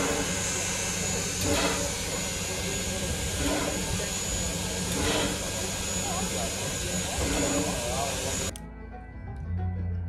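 Steady hiss of steam from Sierra Railway No. 3, a steam locomotive standing at the platform, with voices faint behind it. The hiss cuts off abruptly about eight and a half seconds in, and music begins near the end.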